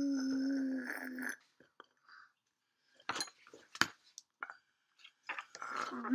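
Air blown through a drinking straw into a pot of soapy paint, bubbling and crackling, with a few sharp clicks of straws and pots around the middle. A held hummed voice opens it for about a second.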